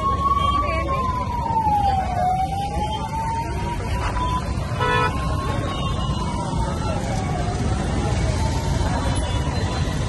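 A siren wailing slowly, its pitch rising and falling in a cycle of about five seconds, over traffic rumble and voices. A short horn beep cuts in about five seconds in.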